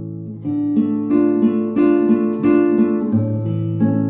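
Slow acoustic guitar music: single notes plucked at an unhurried pace over held bass notes.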